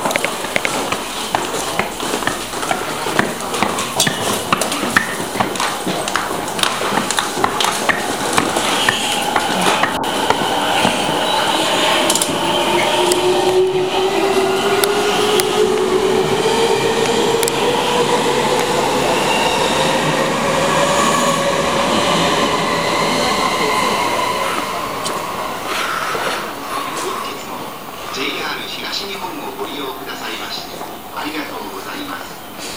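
Electric commuter train pulling out of a station, its motors whining in a tone that rises steadily for about twelve seconds as it gathers speed, then fades, over station crowd noise.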